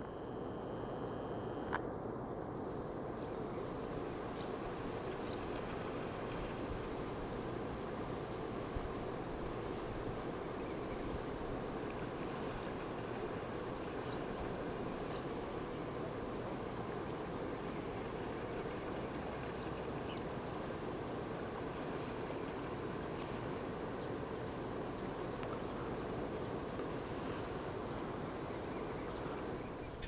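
Steady outdoor riverside ambience: an even rush of flowing river water, with a thin, high insect drone over it and a few faint chirps.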